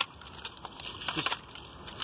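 Screws and plastic trays being handled in a waterlogged toolbox: a few light clicks and knocks, spaced out.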